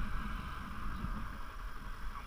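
A stationary motorcycle's engine idling, a low uneven rumble with a steady hiss, while a car passes close by.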